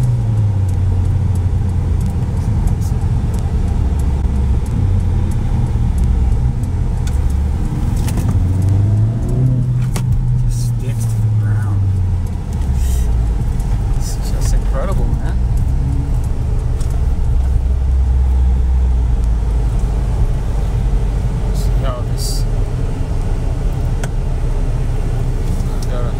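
2020 Mercedes-AMG CLA 45's turbocharged 2.0-litre inline-four running with a steady low drone; engine speed rises about a third of the way through and settles back down. A few short sharp clicks are heard over it.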